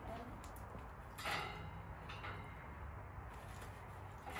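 Dry maple wood chips rattling on the grate and charcoal of an offset smoker's steel side firebox as they are spread by hand, and the firebox lid being shut. Two brief scraping rattles come about a second and two seconds in, over a steady low rumble.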